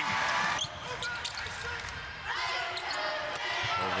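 Basketball game sound in an arena: crowd noise after a made three-pointer, then sneakers squeaking and the ball bouncing on the hardwood court.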